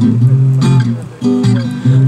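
Acoustic guitar strumming chords as a song accompaniment, with a brief dip in loudness just past a second in.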